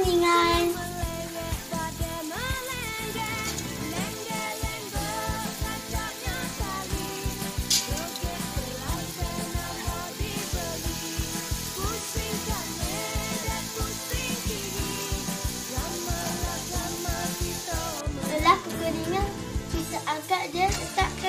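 Background music with a steady beat, over the sizzle of sweet-potato dumplings deep-frying in hot oil.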